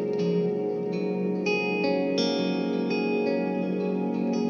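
Instrumental music: plucked guitar notes ringing out with echo, a new note or chord coming in every half second or so.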